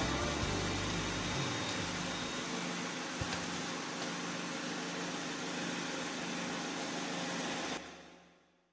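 Steady background hiss and room noise of a phone karaoke recording, with a last low note of the backing track dying away in the first second or so; the sound cuts off suddenly near the end.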